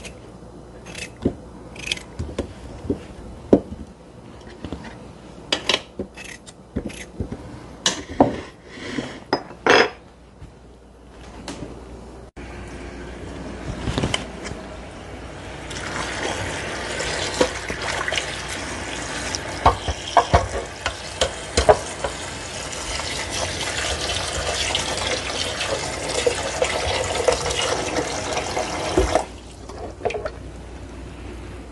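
Knife cutting potatoes, with chunks dropping into a metal pot in scattered clicks and knocks. Then a kitchen tap runs into the pot of cut potatoes, filling it with water in a steady rush that grows louder, and stops abruptly near the end.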